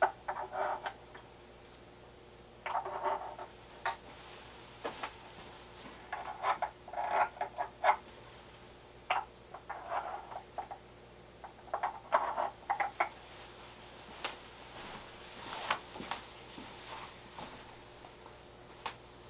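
Speaker cables and their plugs being handled by hand at the back of bookshelf speakers: scattered, irregular quiet clicks, taps and rustles as the wires are disconnected and reconnected.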